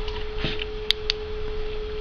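Two sharp clicks about a second in, the flashlight's tail switch being pressed to turn it on, over a steady high-pitched hum and low rumble.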